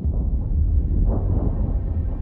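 Loud, deep rumble with a faint hiss above it, swelling about a second in.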